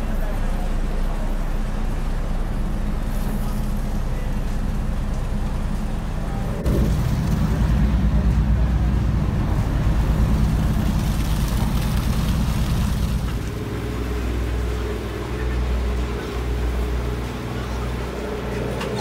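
A ferry's engine running with a steady low rumble, growing louder about seven seconds in and easing again a few seconds later.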